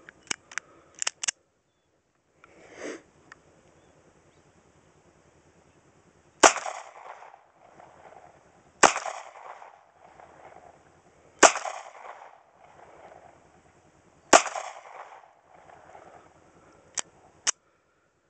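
Kel-Tec P-3AT .380 ACP pocket pistol firing four single shots, about two and a half to three seconds apart, each followed by a short echo. The last shot leaves a spent case pinched between slide and barrel, a failure to eject, and two light clicks follow near the end.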